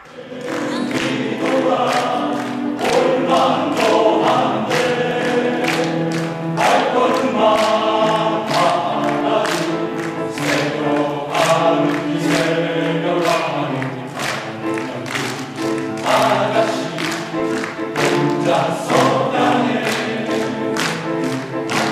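Men's choir singing sustained chords in close harmony, over a steady beat of sharp clicks.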